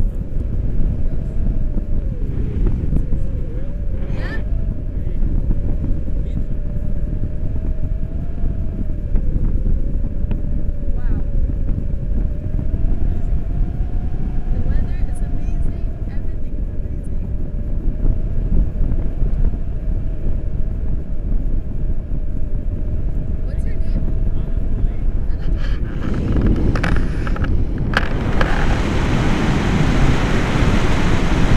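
Airflow buffeting the microphone of a selfie-stick camera on a paraglider in flight: a heavy, steady rumble with a faint wavering whistle. About 26 seconds in, the rush turns louder and hissier.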